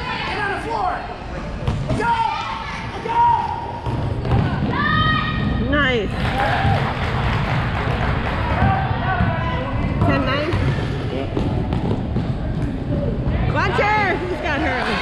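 A basketball bouncing on a hardwood gym floor during play, with shouting voices from players and the sideline over the general noise of a busy gym.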